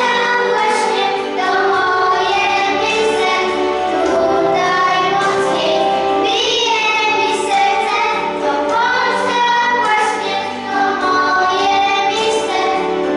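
Children singing a song together, led by two young girls singing into handheld microphones.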